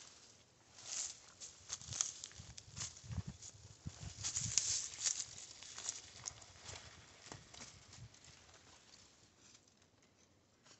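Footsteps crunching through dry leaf litter and brush, with twigs snapping and branches brushing past in an irregular crackle. It is busiest midway and thins out toward the end.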